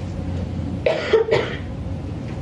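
A person coughing: a short, quick cluster of coughs about a second in.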